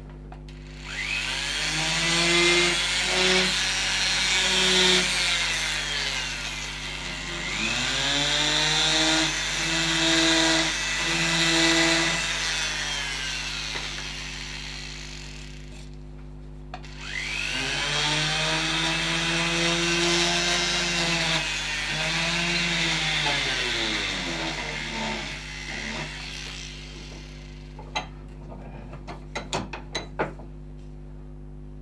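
Small high-speed rotary carving tool grinding into wood in three long runs, each winding up in pitch at the start and winding down at the end. A few light clicks come near the end.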